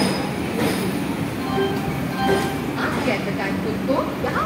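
Red passenger coaches of an arriving express train rolling slowly along the platform, with a steady rumble and a few short, high squeaks about halfway through. Voices are faintly heard in the background.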